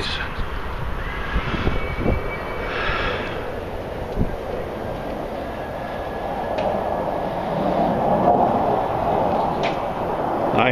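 Jet airplane passing overhead: a steady engine noise that grows louder over the last few seconds.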